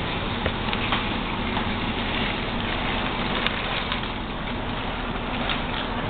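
Cocoa Pebbles crisp rice cereal poured from its box into a bowl: a steady rattling hiss of many small pieces falling and pattering against the bowl and each other.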